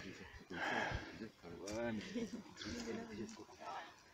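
Short murmured voice sounds and grunts with no clear words, bending in pitch, and a brief rustle about half a second in.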